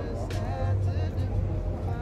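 Indistinct voices with background music over a steady low rumble of traffic.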